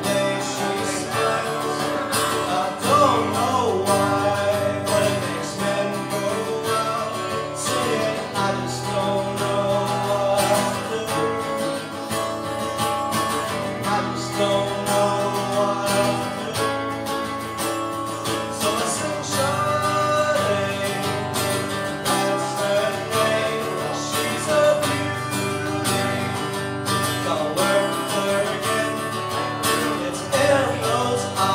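Acoustic guitar strummed steadily through a song, with a voice singing over it.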